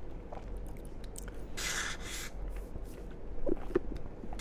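Close-miked eating mouth sounds: small scattered mouth clicks, a short breathy hiss about halfway through, and near the end a few short squeaky sounds as a drink starts to be sipped through a plastic straw.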